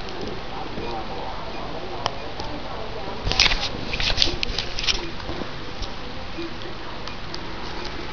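Handling noise over a steady hiss: a single sharp click about two seconds in, then a cluster of clicks and rustles from hands working the small controls on an Arduino breadboard and moving a handheld camera.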